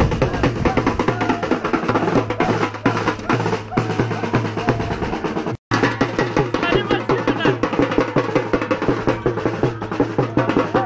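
Loud, fast drumming with music for dancing, with dense, even drum strokes. The sound cuts out completely for a moment a little over halfway through.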